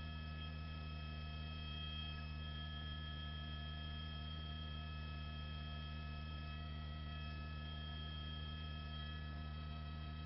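A steady electrical hum in the broadcast audio, with several thin, constant high whining tones over it, unchanging throughout.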